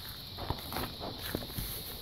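A person climbing into a pickup truck's driver's seat: soft rustling and shuffling with a few light knocks, one about half a second in and another about a second and a third in.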